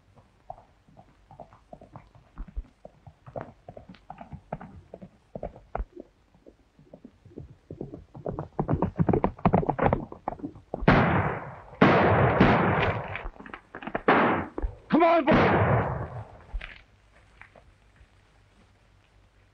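Hoofbeats of a galloping horse, a quick run of knocks that grows denser and much louder about eight seconds in as the horse comes close, with a short pitched cry about fifteen seconds in.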